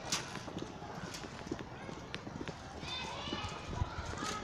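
Outdoor street ambience with scattered sharp taps or clicks, and people's voices coming in during the second half.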